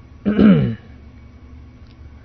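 A man clearing his throat once, briefly, the pitch falling as it ends.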